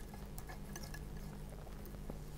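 Faint soft squishing with scattered light clicks: a palette knife working acrylic paint into a gray mix on the palette.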